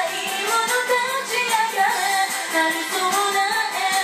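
A woman singing a Japanese pop song over a backing track with a steady beat.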